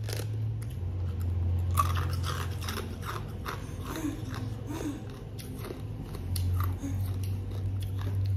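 Close-up crunching and chewing of crisp food, an uneven run of crunches over a steady low hum.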